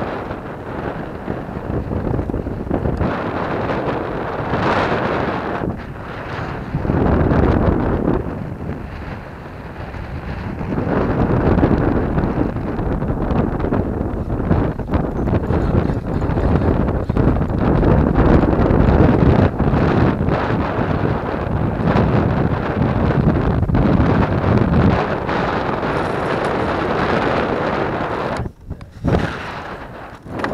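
Wind buffeting the camera microphone in gusts, a loud, uneven rush that swells and eases, dipping out sharply for a moment near the end.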